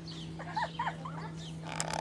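A woman's soft laughter: a few short, quiet laughs with rising and falling pitch, then a brief click near the end.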